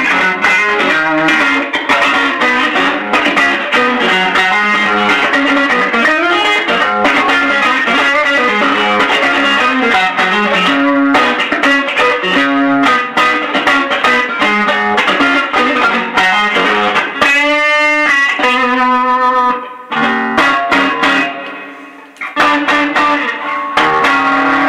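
Overdriven electric guitar playing a blues-rock lead through a Maxon ST9 Super Tube Screamer, set with lots of drive and the mids turned down, into a Suhr Badger 18-watt tube head and a 1x15 cabinet with a Weber Blue Dog speaker. After busy runs, a few long notes are held with wide vibrato and one rings out and fades before the playing picks up again near the end.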